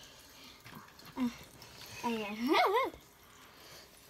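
A child's wordless voice: a short sound about a second in, then a drawn-out vocal sound whose pitch wavers up and down about two seconds in.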